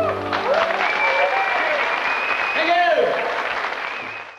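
A rock band's final sustained chord, with guitar, ringing out and stopping about half a second in, followed by the audience applauding and cheering, with one long high held note among the cheers.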